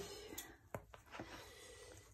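Faint handling sounds: a few light clicks and rustles as a pair of scissors is picked up and brought to a ribbon on a paper notebook cover.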